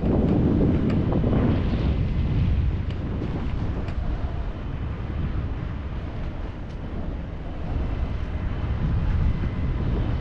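Wind buffeting the microphone of a pole-mounted camera on a parasail in flight: a heavy low rumble that surges at the start, eases after a few seconds and swells again near the end.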